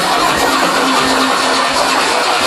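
Drum and bass DJ set over a festival sound system, heard through a phone's microphone: the deep bass drops away about half a second in, leaving a held low synth note over a dense wash of sound.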